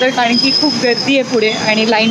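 A woman talking close to the microphone, with a thin, steady high-pitched whine behind her voice that starts shortly after the beginning and stops just before the end.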